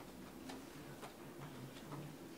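Quiet room with a few faint, scattered clicks and small knocks from people shifting and sitting down in upholstered chairs.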